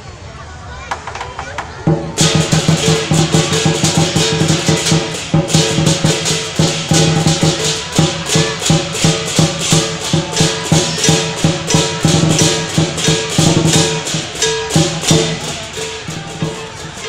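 Lion-dance percussion band (big Chinese drum, cymbals and gong) starts up about two seconds in and plays a loud, fast, steady beat of cymbal crashes over a ringing drum and gong, accompanying lions performing on poles. Before it starts, only crowd murmur is heard.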